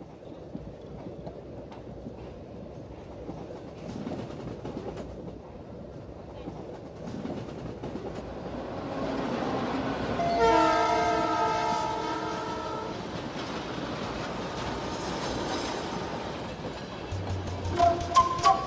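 A train running with a rumble that grows louder, and its horn sounding one steady multi-tone blast of about two and a half seconds, about ten seconds in, with a fainter echo of it a few seconds later.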